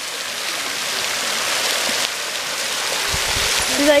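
Waterfall spray pouring down into a shallow rock pool: a steady, even hiss of falling water.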